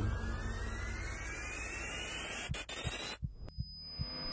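Sound-design riser in an edit's soundtrack: a whine rising steadily in pitch over a low pulsing hum. It cuts off abruptly about three seconds in, with a couple of sharp clicks, leaving a faint high steady tone.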